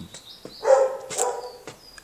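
A single short animal call, about half a second long, a little under a second in, with a few faint high chirps around it.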